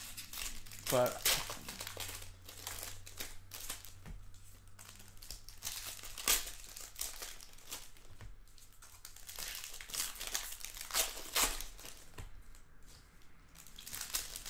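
Shiny wrapper of a trading-card pack crinkling and tearing as it is handled and ripped open by hand, in irregular crackles throughout.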